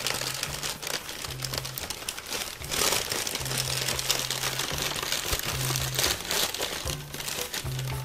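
Packing paper being crumpled and pulled apart by hand, a dense, irregular crinkling that swells twice, about three seconds in and again around six seconds.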